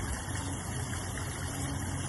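Steady splash and trickle of water spilling over the rock of a small garden-pond waterfall, fed by a newly started pump, with a low rumble underneath.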